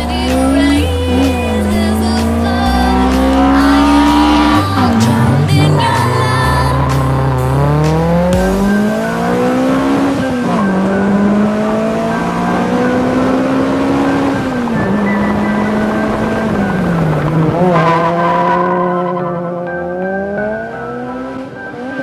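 Toyota Celica GTS's 1.8-litre 2ZZ-GE four-cylinder, breathing through a straight-through exhaust with no catalytic converter, accelerating hard: its pitch climbs with the revs and drops back sharply at each gear change, several times over. Music with a heavy bass beat plays underneath for roughly the first eight seconds.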